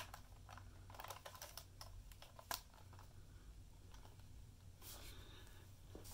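Faint clicks and handling of a small plastic radio/camera, the National Radicame C-R3, as its battery and film compartment doors are worked. One sharper click comes about two and a half seconds in.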